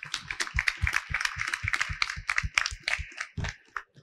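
Small audience applauding: many quick, irregular hand claps that thin out near the end.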